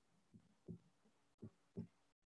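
Near silence over an online call's audio, broken by four faint, short, low thuds.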